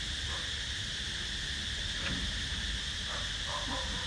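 Steady high-pitched insect drone, unbroken throughout, over a low background rumble.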